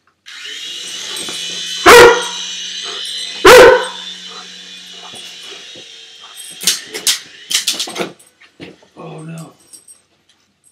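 A Weimaraner puppy barks loudly twice over the steady whine of a toy remote-control helicopter's motor and rotor. The whine starts suddenly and fades out about halfway through. A quick run of sharp clicks and clatters follows.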